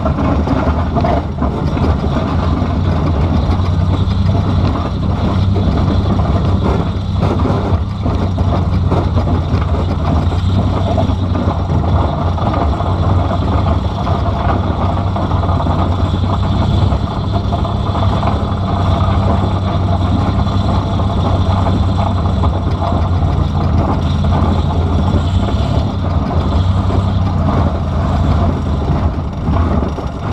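The 2005 Pontiac Grand Prix demolition car's engine running steadily, heard from inside the stripped cabin as the car is driven. The car is running with a broken subframe, its engine dropped toward the ground.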